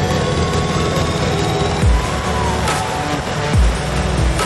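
Background music laid over the roar of a hot-air balloon's propane burner, fired into the envelope during hot inflation. A low falling sweep recurs about every second and a half.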